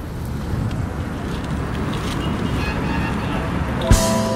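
Steady low rumble of wind on the microphone and roadside traffic, with a brief sharp thump just before the end.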